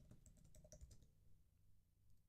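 Near silence with a few faint computer-keyboard clicks in the first half.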